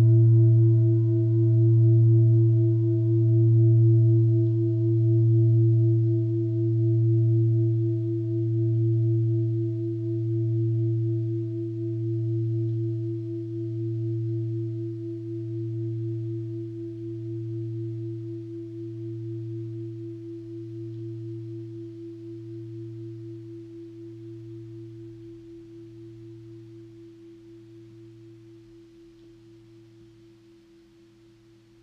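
A singing bowl ringing out after being struck, its tone wobbling in slow pulses about every second and a half and fading away steadily, the higher overtones dying out first.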